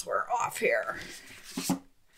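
A woman's voice speaking briefly and indistinctly, in two short stretches, with a sharp click right at the start.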